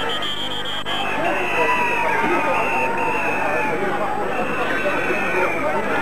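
Crowd hubbub: many voices talking and calling over one another, with a high, steady note sounding on and off.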